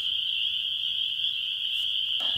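A dense chorus of frogs: a steady, unbroken high-pitched calling.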